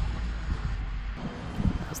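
Low rumble of handling noise with a few faint knocks and clicks as hands work an electrical connector off a fuel pressure sensor.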